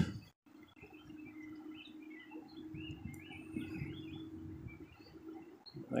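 Small birds chirping, a string of short high calls, over a faint steady hum that fades out near the end.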